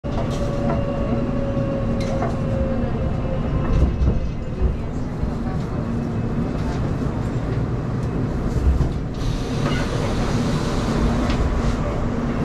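Subway train running, heard from inside the carriage: a steady low rumble with a faint steady whine and a few sharp clicks.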